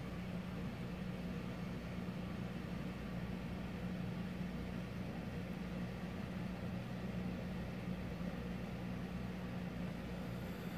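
A steady low mechanical hum over a soft hiss, unchanging throughout, with no distinct knocks or calls standing out.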